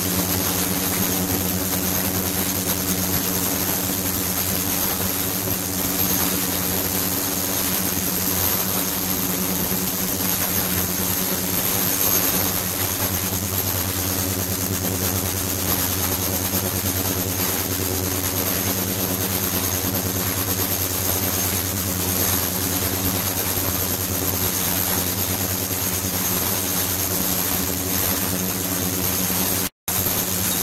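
Ultrasonic bath running with bottles of slurry immersed in it: a steady hum made of evenly spaced low tones, with a hiss and a thin high whine above, cutting out briefly just before the end.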